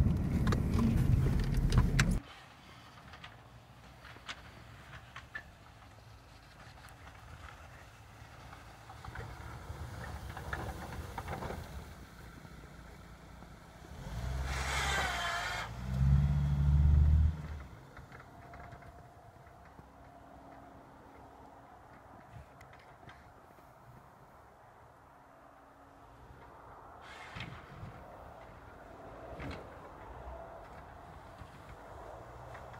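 2000 Dodge Neon's four-cylinder engine pushing a plow blade through wet, heavy snow. For the first two seconds it is loud, heard from inside the cabin; after that it is quieter, heard from outside. About halfway through, the engine revs up and the loudest low surge follows as it shoves the snow.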